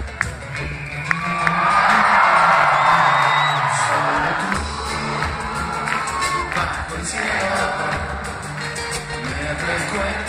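Live band music from a large acoustic ensemble, with the audience cheering and whooping over it. The cheering swells about a second in, is loudest around two to three seconds, and dies down by about four seconds while the band plays on.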